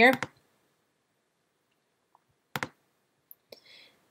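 A quick pair of sharp clicks from working a computer, about two and a half seconds in, followed by a few fainter ticks, with near silence around them.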